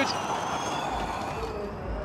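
Formula E race cars' electric drivetrains whining as they pass, thin high tones slowly falling in pitch over a noisy haze. About a second in, a low rumble joins.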